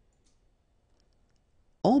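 Near silence with a few faint, brief clicks from a computer mouse. A man's voice starts just before the end.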